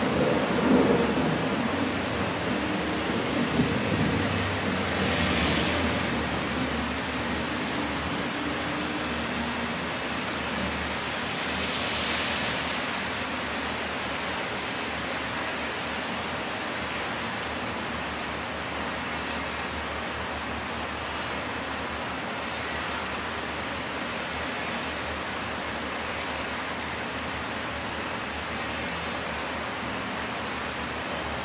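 Steady rushing noise with no tone, rumbling and louder in the first few seconds, then settling to an even level, with faint swells of hiss about five and twelve seconds in.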